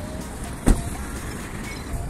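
A steady outdoor background hiss with one short, sharp knock about two-thirds of a second in.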